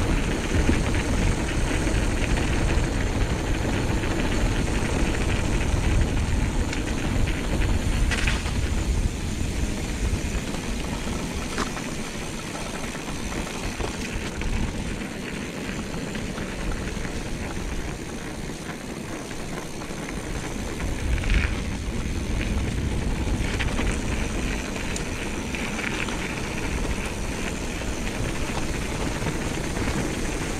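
Mountain bike rolling down a rough gravel and stone track: steady tyre rumble and wind on the microphone, easing somewhat in the middle. A few sharp rattles of the bike over bumps come about eight, eleven and twenty-one seconds in.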